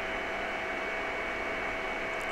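Steady room noise: an even hiss with a few faint constant tones under it, unchanging throughout.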